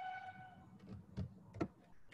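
A short pitched tone with overtones lasting about half a second, followed by a few light clicks or knocks.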